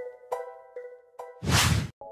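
Background music of plucked string notes, then about one and a half seconds in a loud swoosh sound effect lasting about half a second, marking a transition to the next shot.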